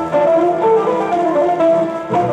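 Instrumental introduction of a Greek song played from a vinyl LP on a turntable: a melody on plucked string instruments.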